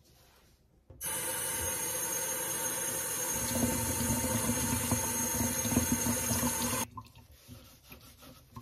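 Kitchen tap running into a stainless steel sink. It starts suddenly about a second in and shuts off abruptly near the end. Partway through the stream splashes over a dry, compressed pop-up sponge held under it to soak it, and the sound grows fuller.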